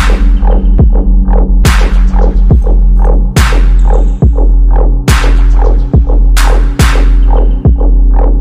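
Riddim dubstep: a loud, deep sub bass held under a slow half-time beat. A sharp snare crack comes about every 1.7 seconds, with fast light hi-hat ticks in the first half.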